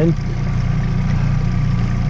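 Yamaha outboard motor running steadily at trolling speed, a constant low hum.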